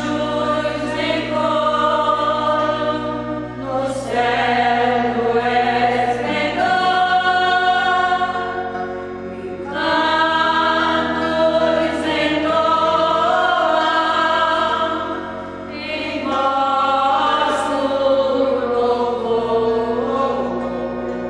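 A choir of women singing a Catholic hymn in Latin in long phrases, over steady held low chords from an organ.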